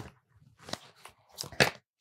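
A tarot deck being picked up and handled: a few short papery rustles and slaps of cards, the loudest pair near the end.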